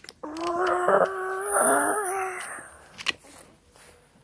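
A voice holding one long, slightly wavering tone for about two seconds, used as a mouth-made sound effect, followed by a couple of sharp clicks about three seconds in.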